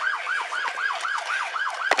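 Police car siren on a fast yelp, a rising-and-falling wail repeating about four times a second, with a sharp knock near the end.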